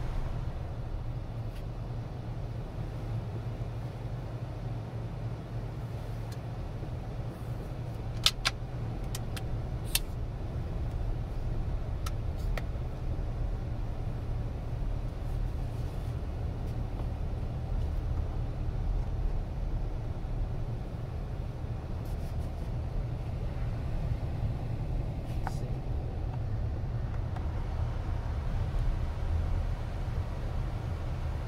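Cabin noise inside a Waymo Chrysler Pacifica minivan moving slowly: a steady low rumble with the air-conditioning fan turned up. A few sharp clicks come about a third of the way in.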